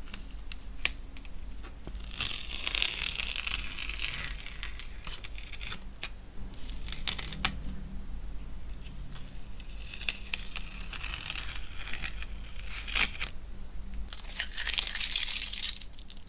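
Masking tape being peeled off watercolour paper, in four long pulls with small clicks and rustles between them.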